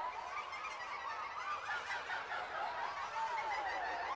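Anime soundtrack of a hallucination sequence: a dense layer of many overlapping warbling, chirp-like tones that rise and fall.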